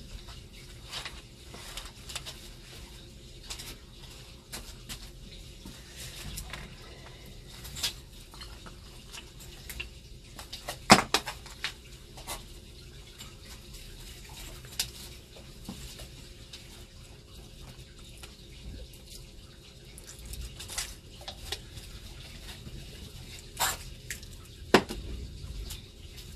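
Faint, irregular crackling and popping of a mixture burning in an aluminium foil tray, with a sharper crack about eleven seconds in.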